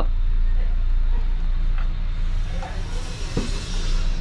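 R-404A refrigerant hissing through the gauge manifold's low-side hose as the valve is opened to charge the freezer; the hiss builds from about halfway through. A steady low hum runs underneath.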